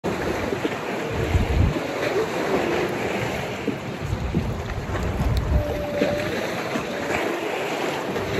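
Wind buffeting the microphone in gusts over a steady wash of open water.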